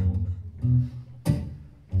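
Acoustic guitar playing a short instrumental passage: plucked bass notes, then a sharp strum about a second and a quarter in that dies away just before the next line starts.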